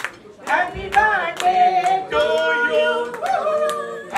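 A woman singing through a microphone, holding some notes long, while people clap along in a steady beat.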